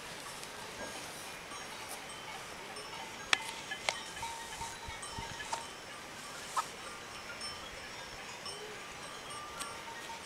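Two goats butting with locked horns, giving a few sharp clacks of horn on horn, the three loudest about three, four and six and a half seconds in. Faint, intermittent bell-like ringing runs underneath.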